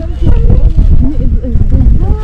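Wind buffeting the phone microphone in a loud, uneven low rumble, with women's voices chattering over it.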